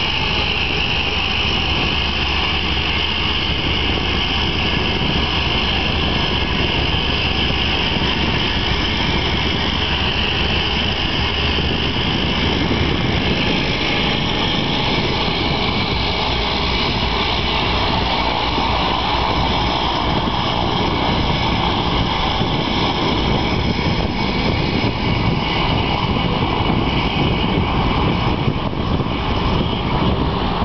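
Single-engine floatplane's propeller engine running steadily as the plane taxis on the water and starts its takeoff run.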